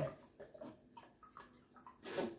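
Green juice trickling faintly from a mesh strainer through a funnel into a glass bottle, with a few soft scattered drip ticks.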